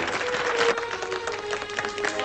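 A crowd applauding: many hands clapping in a dense, even patter.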